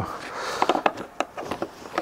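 Soft rustling, then a few faint light clicks, from hands handling a child car seat.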